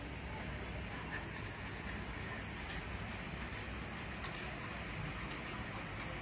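Automatic mosquito-net bed canopy lowering its net: a steady low hum and hiss with light, irregular ticking.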